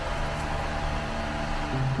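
Steady low hum and hiss of room background noise. Music starts near the end.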